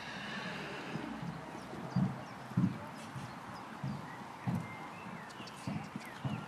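Muffled hoofbeats of a horse cantering on a soft arena surface: about six dull thuds at uneven intervals.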